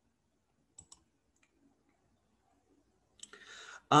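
Near silence with two faint, sharp clicks close together about a second in, then a short, soft breath-like hiss near the end.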